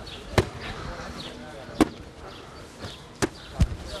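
A football being struck in play: four sharp thuds of the ball off feet and hands. The last two come in quick succession near the end.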